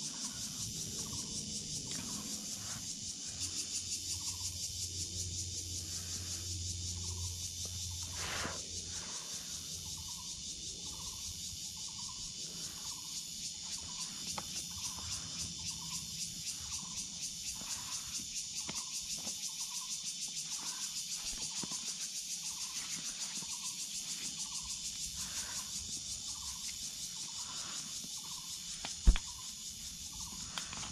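A steady, high chorus of insects, with a softer short call repeating about once a second beneath it. A single sharp knock comes near the end.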